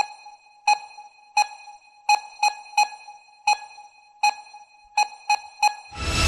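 A clock-style ticking sound effect made of short, bright electronic pings, all at the same pitch. There are about eleven, each dying away quickly, mostly about two thirds of a second apart, with a few coming in quicker runs of two or three.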